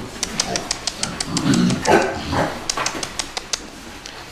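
Young pigs grunting a few times near the middle, with a scatter of sharp clicks from their trotters on the slatted pen floor.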